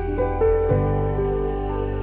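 Slow, soft background music: sustained notes over a steady bass, with new notes entering a few times.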